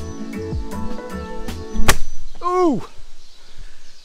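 Background music with a steady beat, cut off about two seconds in by a sharp knock, a shin striking a wooden boardwalk step, followed by a loud cry that falls in pitch.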